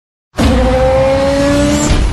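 Car sound effect for a logo intro: a racing engine note climbing slowly in pitch over a loud rush of noise, with a tyre-squeal quality, cutting in suddenly about a third of a second in.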